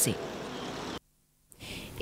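Street traffic: a car passing with a steady engine and tyre noise for about a second. The sound then cuts off abruptly to half a second of dead silence, followed by faint background noise.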